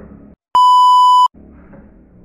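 A single loud, steady electronic bleep tone about three-quarters of a second long, edited into the soundtrack. The audio drops to dead silence just before and after it.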